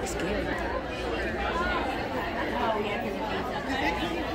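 Crowd chatter in a large indoor hall: many overlapping voices at a steady level, none of them close.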